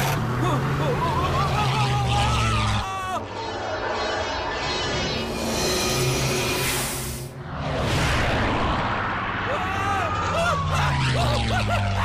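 Animated film action soundtrack: music and voices over a light biplane's engine. A rocket whoosh about six seconds in cuts off suddenly.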